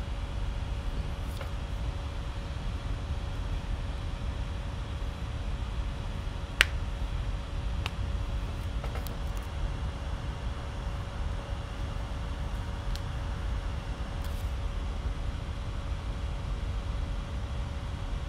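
Steady room noise: a low rumble with a faint steady hum. A single sharp click comes about six and a half seconds in, with a few fainter clicks later.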